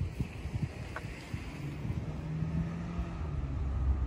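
Wind buffeting the microphone outdoors, a low uneven rumble, with a faint steady low hum for a couple of seconds in the middle.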